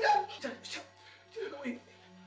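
A woman's short, high, pained whimpers in the struggle, several in quick succession, growing fainter.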